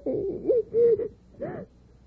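A woman sobbing: about four short, wavering, breaking cries, fading out after about a second and a half.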